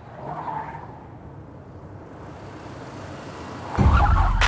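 A car moving in an echoing underground car park, with a brief swell of tyre and engine noise about half a second in. Near the end a sudden loud deep boom breaks in.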